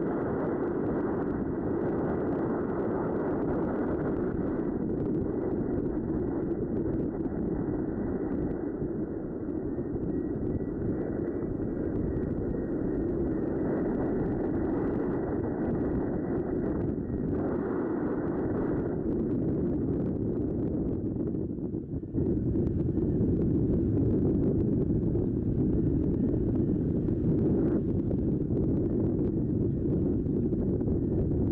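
Wind buffeting the microphone: a steady, low rumbling rush that gets louder about three-quarters of the way through.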